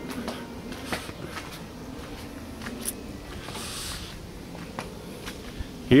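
Soft, irregular footsteps on a paved driveway with light handling clicks from a handheld camera, over a faint low hum.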